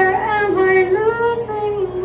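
Solo soprano singing into a microphone: a slow melodic line that holds notes and slides between them.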